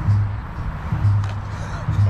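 Background music with a low bass note repeating about once a second, over a steady background hiss.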